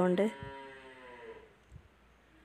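A woman's voice drawing out the end of a word in one long, slowly falling vowel that fades away by about a second and a half in, leaving only faint room tone.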